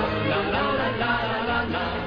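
LP recording of a Romanian pop song: vocals singing a repeated 'la la la' refrain over an orchestra.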